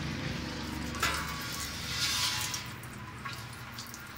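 Sweet wort trickling from the mash tun's outlet into a stainless brew kettle, a hissing, splashing stream that swells about two seconds in and then eases. The sparge runoff is a little fast.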